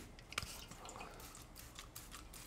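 Faint handling noise from an aerosol can of WD-40: small clicks and rustles, with one sharper click about half a second in.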